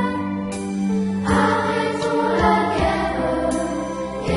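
A school choir of students singing a French song in unison, with an instrumental backing track and a steady beat.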